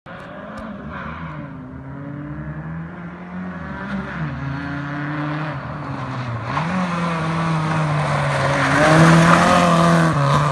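Opel Corsa rally car's 2.0-litre C20NE four-cylinder engine revving hard as it approaches, growing steadily louder. The engine note drops twice, about four and six and a half seconds in, then climbs again.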